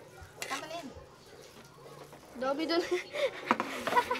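Metal ladle scraping and clinking against a wok and plate while thick sauce is spooned out, with two sharp clinks near the end.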